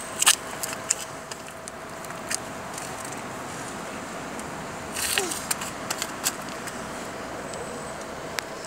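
Outdoor town background noise: a steady hum, likely distant traffic, with scattered small clicks and a short rustle about five seconds in.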